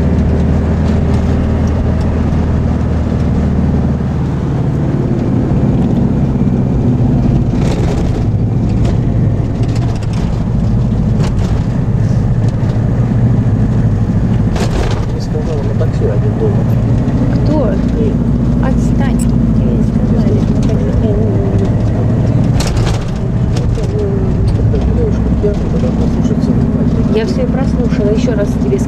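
Minibus engine running as the vehicle drives, heard from inside the passenger cabin as a steady low drone that rises and falls a little with speed. A few sharp knocks or rattles come through it.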